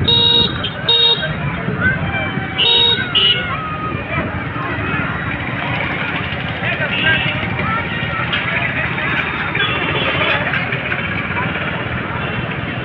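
Vehicle horns honking in busy street traffic: two short toots in the first second or so and two more about three seconds in. Under them run traffic noise and the chatter of a crowd.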